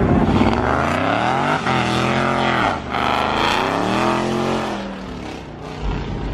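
Car engine revving hard in repeated pulls, its pitch climbing and dropping about three times before falling away near the end, as the car spins its wheels on the road.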